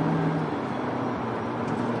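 Peugeot 3008's 1.6-litre turbo engine and road noise heard from inside the cabin while driving, a steady rumble. A low engine tone drops away about half a second in.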